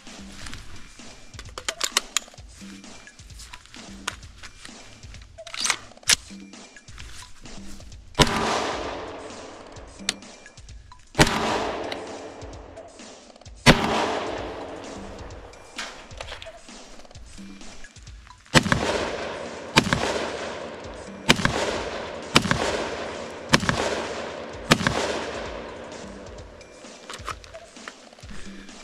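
.223 semi-automatic rifle shots, each with a trailing echo. A few single shots come several seconds apart, then a quicker string of about one shot a second near the end.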